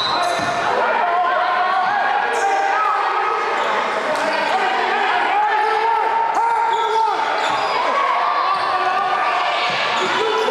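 Sneakers squeaking repeatedly on a hardwood gym floor, with a basketball being dribbled and voices echoing around the gym.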